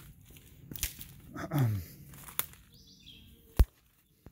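Footsteps through leaf litter and palmetto fronds: a few light crackles and clicks, ending with one sharp click near the end, the loudest sound.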